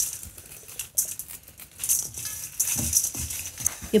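Dried fennel seed heads rubbed between fingers over a stainless steel bowl, the seeds and bits of husk rustling and pattering into the bowl in several irregular bursts.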